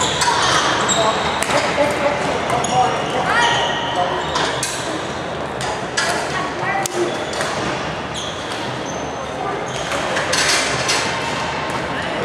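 Badminton play echoing in a large sports hall: sharp racket strikes on the shuttlecock and players' footwork on the wooden court. The strikes come thickly in the first half, thin out, then pick up again near the end, over a steady bed of background chatter.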